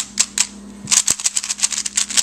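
DaYan LingYun V2 3x3 speed cube, lubricated with Lubix, being turned by hand: a few separate plastic clicks, then a fast run of clacking turns from about a second in.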